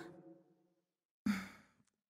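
A short sigh, about a third of a second long, a little over a second in, between lines of dialogue on an otherwise silent track.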